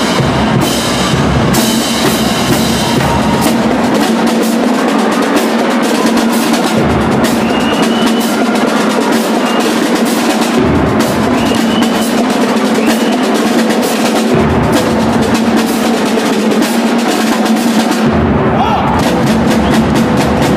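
High school marching drumline playing in a gymnasium: snare drums keep up fast, dense patterns with cymbals, while the bass drums drop out for stretches of a few seconds and come back in several times.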